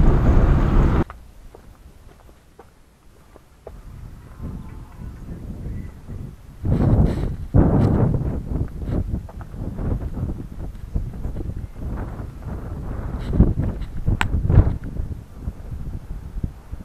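Car running along a dirt road, heard from inside the cabin, stops abruptly about a second in. Then wind buffeting the microphone with irregular rustling and scuffs, loudest in gusts about seven to eight seconds in.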